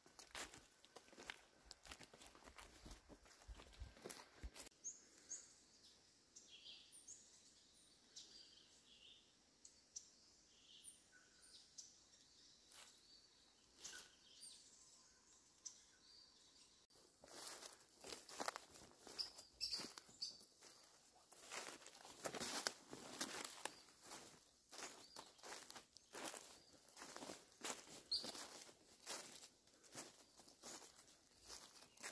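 Faint, scattered high bird chirps in forest. From about halfway, irregular crunching of dry leaf litter underfoot.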